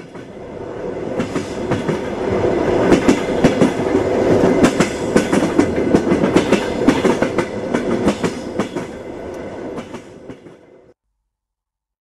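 Railway train passing, its wheels clicking over the rail joints; the sound swells to a peak midway and fades away, ending about eleven seconds in.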